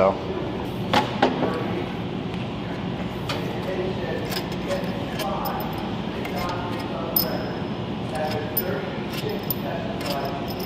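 A few sharp metallic clicks and clinks of bolts and tools on an aluminium automatic transmission case during teardown, about one second in and again later, over a steady background with faint voices in the middle.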